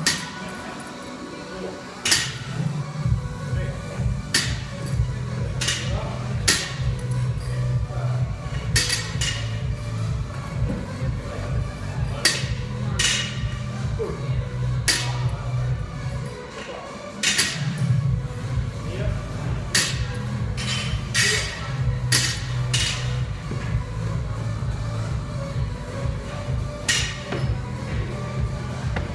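Loaded barbell with bumper plates being snatched and lowered over and over, giving sharp metallic clanks and knocks every second or two. Gym music with a steady bass line plays underneath.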